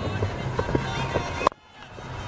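Background music, broken about one and a half seconds in by a single sharp crack of a cricket bat striking the ball, after which the sound briefly drops away.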